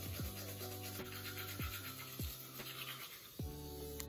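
A toothbrush scrubbing teeth in quick repeated strokes, a wet rasping sound, over background music with falling bass notes.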